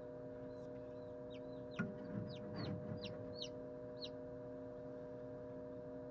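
Hatching Lavender Ameraucana chick peeping: about a dozen short, high peeps, each sliding down in pitch, coming quickly over a few seconds and then stopping. A single thump about two seconds in is the loudest sound, with a steady hum underneath throughout.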